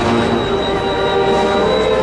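Procession brass band holding long sustained notes, with a thin, steady high tone over them that stops shortly before the end.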